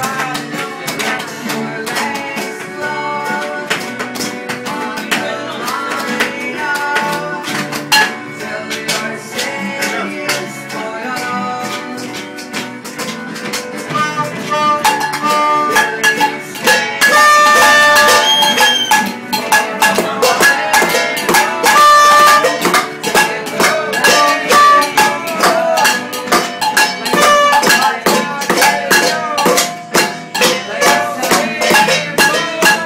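Acoustic guitars strummed in a fast rhythmic jam. About halfway in a saxophone joins with long held melody notes, and the music grows louder.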